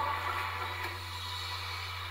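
The last sung chord of a women's vocal group, with its backing music, fading out and leaving a steady low hum and hiss.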